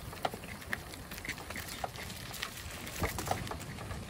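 Bicycle rolling over a brick-paved path: a low rumble of tyres and wind with irregular light clicks and rattles from the bike.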